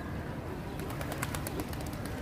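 Outdoor ambience by a fountain where feral pigeons are gathered: a steady low rumble, and a quick run of sharp clicks about a second in.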